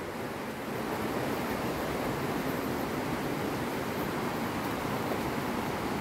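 A steady rushing noise with no distinct events, holding an even level throughout.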